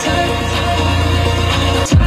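Music from the car radio playing through a 12-speaker Bose sound system in the car's cabin, with a heavy, steady bass line. The bass drops out briefly just before the end.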